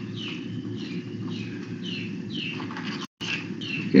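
A small bird chirping, a string of short falling chirps about two a second, over a steady low hum on a voice-chat line. The audio cuts out for an instant about three seconds in.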